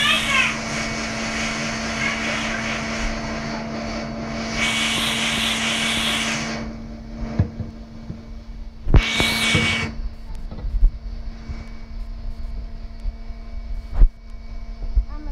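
A steady motor hum with a low drone runs throughout and gets quieter after about seven seconds. Two bursts of hiss come over it: a longer one about five seconds in, and a short, loudest one about nine seconds in.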